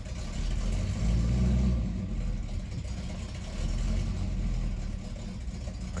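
Pontiac Trans Am's carburetted V8 running just after a start, revved up twice, about a second in and again near four seconds. The revving keeps it alive while fuel is not yet reaching the carburettor properly and it cannot hold an idle.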